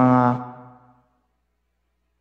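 A man's voice drawing out the last word of a phrase on one held pitch, fading away within the first second, then silence.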